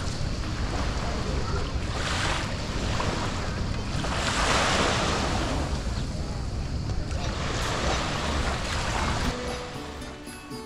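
Small waves washing onto a pebble shore, surging every two to three seconds, with wind rumbling on the microphone.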